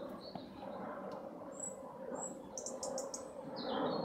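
Small birds chirping outdoors: two short high whistles, then a quick run of chirps and a falling call near the end, over steady background noise.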